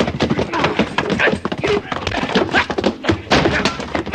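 Staged radio-drama scuffle: two men struggling over a gun, grunting and straining, with repeated thuds and knocks of bodies and furniture.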